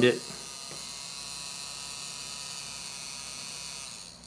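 Small brushed DC hobby motor with a wooden disc on its shaft, running steadily, switched fully on by an N-channel MOSFET with a constant 4.5 V on its gate. Right at the end it starts to die away as the gate is grounded and the motor switches off.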